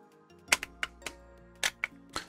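A handful of sharp little clicks and taps of a plastic 1:32 slot car being handled, its body and chassis knocking against fingers, over quiet background music.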